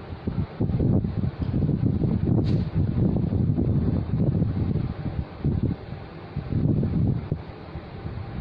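Air buffeting the microphone: a gusty low rumble that swells and drops every second or so, with one brief sharp tick about two and a half seconds in.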